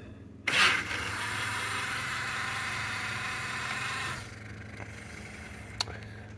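Lid motors of a Fisher & Paykel double DishDrawer dishwasher driving the wash-tub lid in the diagnostic lid test. A steady whirring scrape starts with a click about half a second in and stops about four seconds in, and a single faint click comes near the end.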